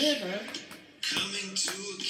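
A children's song: a voice singing short held notes over jingling, tambourine-like percussion that keeps a steady beat.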